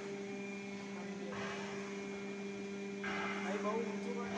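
Steady low machine hum made of two tones, one an octave above the other, with two short bursts of hiss-like noise about a second in and again near the end.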